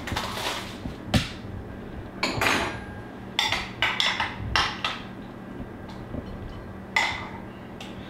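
Plastic wrap rustling as it comes off a bowl, then a metal spoon scraping and clinking against glass bowls as a thick yogurt sauce is scooped out. There are a few sharp knocks along the way.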